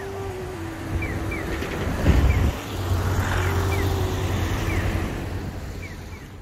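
Road traffic with a steady engine hum, one vehicle passing loudest about two seconds in. Over it, a pedestrian crossing signal's electronic bird-call chirps repeat in pairs, about one pair a second.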